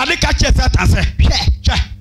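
A man preaching fast and rhythmically through a microphone and loudspeakers, with no pause in the delivery. A steady low hum runs underneath.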